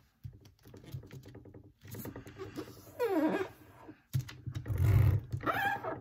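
Origami paper being handled and pressed into folds on a tabletop: rustling, taps and scrapes of the paper and hands. Short wordless vocal sounds come in: a falling one about three seconds in, and another near the end.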